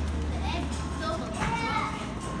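Children's and adults' voices chattering, unclear and mid-distance, over a steady low rumble that fades about a second in.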